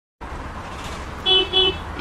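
A car horn beeps twice in quick succession over a low rumble of road traffic.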